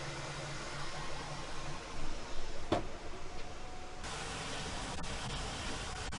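Bambu Lab 3D printer running mid-print: a steady whir of cooling fans, with louder, uneven motor noise about two seconds in and a sharp click just before the middle.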